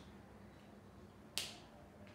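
Near silence of a small room, broken once by a single short, sharp click a little after halfway through.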